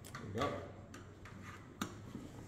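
Close handling noise from a man getting into position with a twelve-string acoustic guitar: clothing rustling and a few light clicks, the sharpest one near the end.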